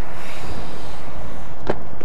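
Loud steady rushing of wind on the microphone, with one sharp click near the end.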